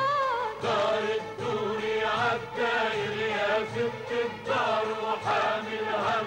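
A solo female voice gives way, about half a second in, to a mixed chorus of men and women singing an Arabic refrain in short repeated phrases, with hand-clapping and a frame drum.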